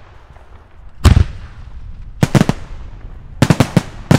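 Logo-intro sound effect: a deep, heavy boom about a second in, then sharp bangs in quick clusters, three together at about two seconds and four more near the end.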